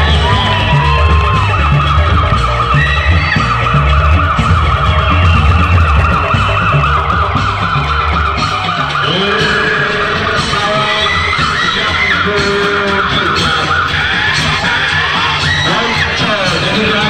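Live traditional music for a Reog street performance: heavy drumming with a steady beat that drops away about halfway through, under a high wavering melody line with sliding notes.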